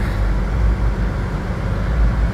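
Steady low diesel rumble of an idling tractor-trailer rig.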